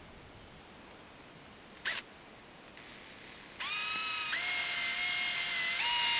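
Cordless drill spinning a center drill bit against a broken exhaust stud to spot a starting point. It starts a little past halfway through with a whine that jumps up in pitch in steps, after a short click about two seconds in.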